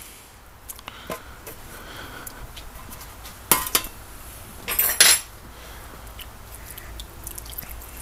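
Stainless steel tray clattering as it is handled and set down: two loud metallic clanks about a second apart near the middle, with light knocks and clinks around them.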